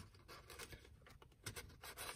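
Faint, irregular scratching and rustling of card and paper as a tag is worked into a tight pocket of a handmade paper journal.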